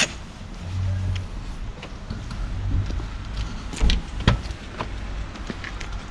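Footsteps on wet pavement, then a small car's door unlatching and swinging open, with two sharp clicks a little under half a second apart about four seconds in, over a low steady rumble.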